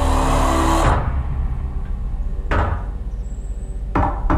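Movie trailer soundtrack: a loud music swell that cuts off about a second in, leaving a low rumble, then a heavy knock on a wooden door, and a second knock near the end.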